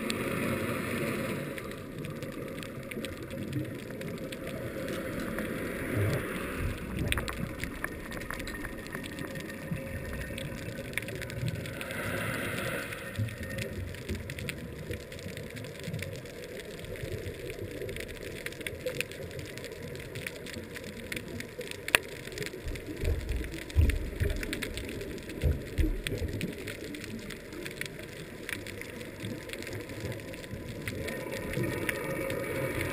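Underwater ambience picked up through a camera's housing on a reef: a muffled, steady hiss scattered with sharp clicks, a louder burst of hissing about 12 seconds in, and a run of low thumps near the end.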